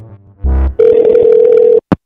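A last bass hit of electronic music, then a steady telephone line tone with hiss for about a second, cut off by two short clicks.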